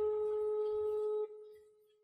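A single steady pure tone with a couple of faint overtones, held for about a second and a quarter and then fading away.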